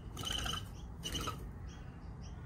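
Small birds chirping repeatedly with short, high notes, with two louder brief sounds near the start and about a second in.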